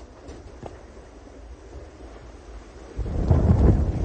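Wind and rushing sea aboard an IMOCA 60 racing yacht sailing fast, at first a steady, fairly low noise. About three seconds in it jumps to loud, low wind buffeting on the microphone.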